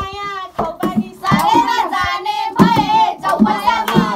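Several young voices singing a song together while hands clap along.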